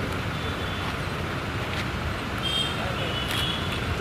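Outdoor background noise: a steady low rumble like road traffic, with a few faint high tones a little past the middle.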